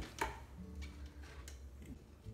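Sharp clicks and knocks from handling wet shredded cabbage and a glass mason jar, the loudest about a quarter second in and a weaker one past the middle, over faint steady tones.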